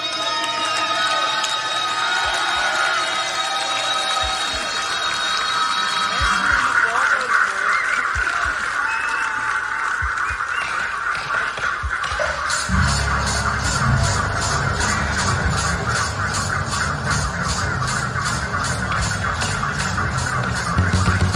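Live heavy-metal band between songs, with sliding, sustained guitar notes over a loudly shouting festival crowd. About 13 seconds in, bass and drums kick in with a steady beat, the cymbals striking about four times a second as the next song starts.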